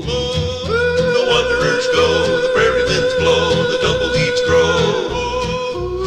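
Western song sung by one man multi-tracked on every part: a long wordless vocal note with vibrato held for about four seconds, dropping lower near the end, over a steady bass beat.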